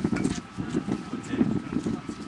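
Wind rumbling on an outdoor microphone, with faint distant voices from the field.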